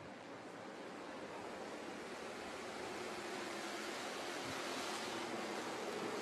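Faint, steady rushing noise of a pack of Bandolero race cars running on the track, slowly growing louder.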